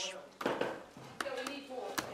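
Voices talking, with a couple of short, sharp clicks.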